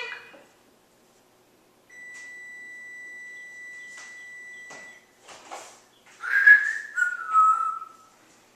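African grey parrot whistling: one long, steady, even note lasting about three seconds, a few sharp clicks, then a louder wavering whistle that steps down in pitch near the end.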